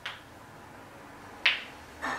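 Two short, sharp snaps about a second and a half apart, the second louder.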